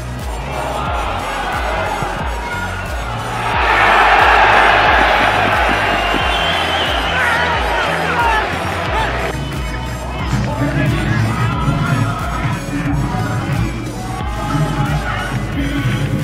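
Background music with a steady beat runs throughout. A stadium crowd cheers loudly for a goal from about three and a half seconds in, then cuts off suddenly about nine seconds in.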